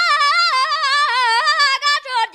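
A high solo voice singing a Tibetan folk song, with rapid wavering ornaments on each note as the melody steps downward. There is a brief break in the voice near the end.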